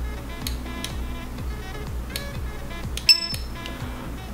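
A handheld USB barcode scanner gives one short, high-pitched chirp about three seconds in, the sign of a successful scan, over background music.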